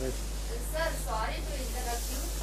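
Chalkboard duster rubbing chalk off a blackboard, a soft hissing rub, with a few quiet spoken words over a steady low hum.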